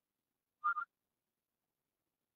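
A brief two-note animal call: two quick pulses, less than half a second in all, about half a second in.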